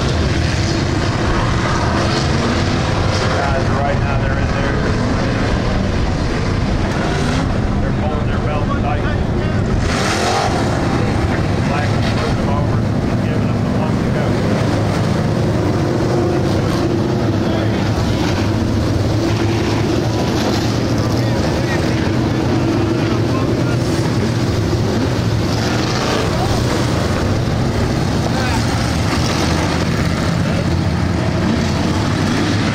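A field of dirt-track stock cars running together around the oval, their engines a loud, steady drone with no sharp changes.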